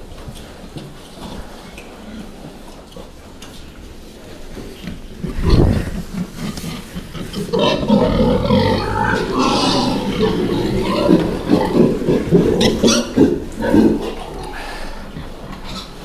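Domestic pigs grunting at close range, a dense run that starts about halfway through and lasts several seconds. A low thump comes shortly before.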